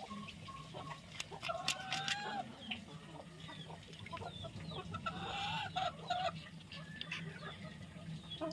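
Chickens clucking nearby, with two longer drawn-out calls, about a second and a half in and around five seconds in, and shorter clucks between. A few sharp clicks sound around one to two seconds in.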